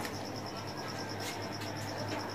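A cricket chirping in a rapid, even run of high pulses, over a low steady hum.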